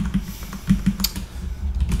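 Typing on a computer keyboard: a run of irregular key clicks as a word is deleted and new letters are typed in.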